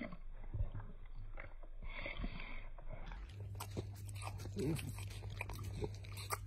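French bulldog chewing Wotsits cheese puffs: a steady run of short, crisp crunches.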